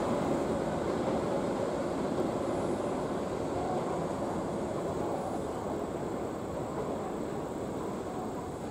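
A train running, heard as a steady low-to-mid noise that slowly fades.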